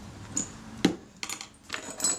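Small metal camera parts being set down and sorted: about half a dozen light metallic clicks and clinks, the loudest a little before halfway.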